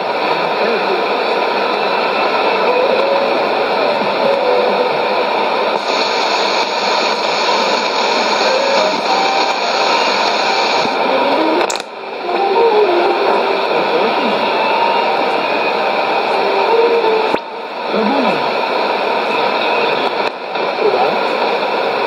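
Shortwave AM broadcast on 11580 kHz through the speaker of a Sony ICF-2001D receiver: a faint voice buried under heavy hiss and static. The signal dips briefly three times, in the middle and towards the end.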